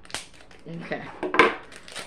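Sharp metallic clicks of clippers snipping open a small jewellery package, the loudest snap about a second and a half in.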